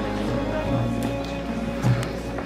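Music with held, sustained notes playing steadily, with faint voices under it.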